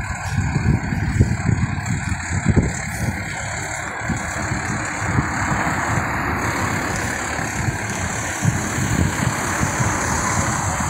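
Road traffic close by, with a heavy vehicle's engine running. The noise of passing traffic grows from about four seconds in.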